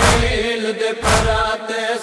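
A noha, a Shia lament, chanted in a long held vocal line over a heavy beat that falls about once a second.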